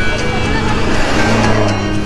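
Oncoming traffic passing close by: a rush of engine and road noise that swells towards the middle, with a low engine hum in the second half as a motorcycle comes alongside. Background music plays underneath.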